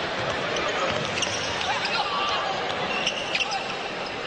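Basketball being dribbled on a hardwood court over a steady arena crowd murmur, with short high sneaker squeaks about three seconds in.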